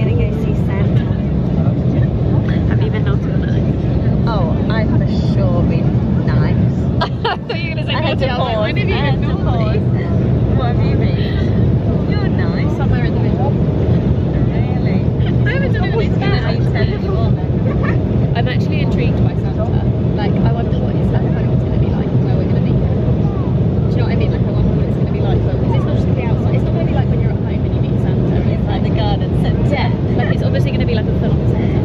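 Passenger plane cabin noise in flight: a steady low drone of the engines and airflow. It dips briefly about seven seconds in, and indistinct voices run over it.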